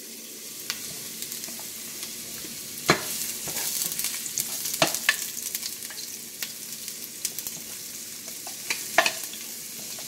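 Sliced onions, green onions and garlic sizzling in a little hot cooking oil in a frying pan as they are sautéed, with a wooden spoon clicking and knocking about four times while vegetables are scraped into the pan.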